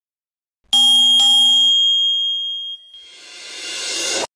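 Bright bell-chime notification sound effect, struck twice about half a second apart and ringing out over about two seconds, followed by a whoosh that swells steadily louder toward the end.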